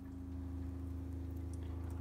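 Steady low hum of background room tone with a faint even tone, and no distinct events.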